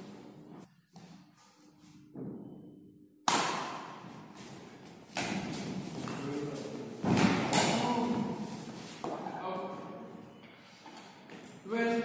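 Badminton racket hits on a shuttlecock during a rally, four sharp strikes about two seconds apart, each echoing in a large hall, with voices talking in between.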